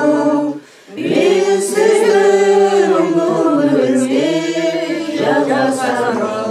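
Singing of a slow melody with long held notes that slide in pitch; it breaks off briefly just after the start and resumes about a second in.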